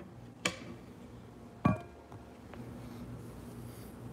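Two sharp knocks from the recording phone being handled and set in place, about half a second and a second and a half in, the second with a short ringing clink, over a low steady hum.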